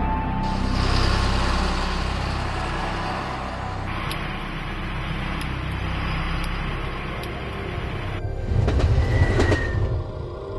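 Tense soundtrack music over the steady rushing noise of a train on the move. Near the end a louder rumble comes in, with a brief high squeal.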